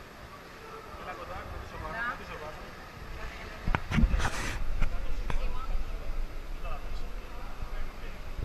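Knocks and a low rumble from a handheld camera being moved. The loudest knocks come about four seconds in, with a few lighter clicks after, and people talk faintly in the background.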